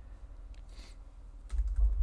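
A few keystrokes on a computer keyboard, over a low steady hum.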